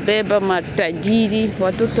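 Speech only: a person talking continuously.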